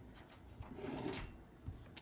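A sheet of printer paper being flipped over, a soft rustle about a second in, with a brief low hum-like sound at the same moment.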